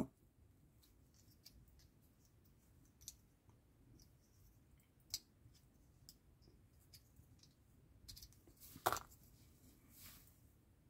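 Faint, scattered clicks of a small flat-blade screwdriver tip levering a plastic model brake disc off its hub pins, with a louder click near the end.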